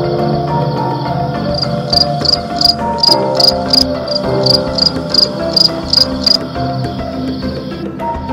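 A cricket chirping loudly in an even series of about three chirps a second for some five seconds, over soft melodic background music.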